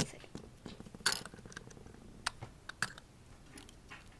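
Small plastic Lego pieces clicking and knocking as they are handled and pulled off the model: a few sharp, irregular light clicks.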